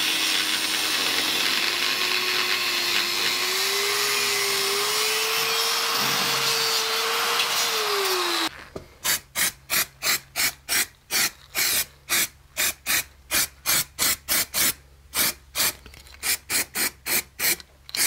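Angle grinder cutting away the corner of a steel bracket, its motor whine rising slightly in pitch before it stops abruptly about eight and a half seconds in. Then an aerosol spray can is sprayed in rapid short bursts, about three a second.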